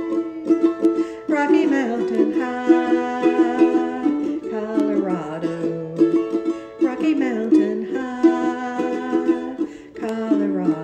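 Ukulele strummed in a steady rhythm, playing the chord accompaniment to a folk song.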